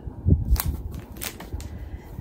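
Precut fabric squares of a layer cake being handled and flipped through in their clear plastic wrapper: a few soft crinkles and clicks, with a low thump about half a second in.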